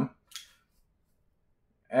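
Near silence, broken once by a brief, faint high tick about a third of a second in.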